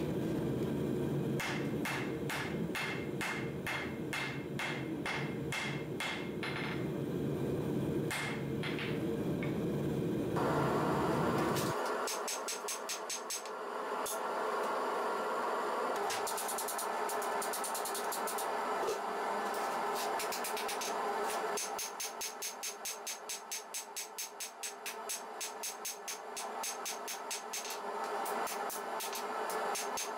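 A hammer strikes red-hot steel on an anvil in a steady rhythm, forge welding a layered Damascus billet. For about the first twelve seconds a steady low rumble runs under the blows, which come about twice a second. After that the rumble stops and the blows come faster, with a bright ring off the anvil.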